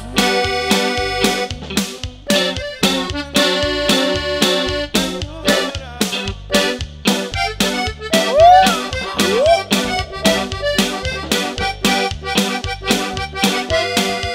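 Norteño band playing live with no singing: accordion leads over bass and a steady, even beat. Two short rising whoops cut in over the music about eight and nine and a half seconds in.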